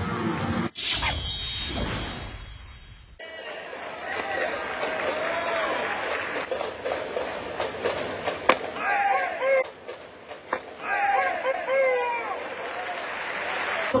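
A whooshing, shimmering transition sound effect that begins about a second in and fades out over two seconds. Ballpark game audio follows: crowd and voice noise with a single sharp crack about eight and a half seconds in.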